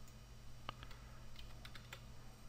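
Computer keyboard keys being typed: about six quick, faint keystroke clicks starting a little after the first half-second, over a steady low hum.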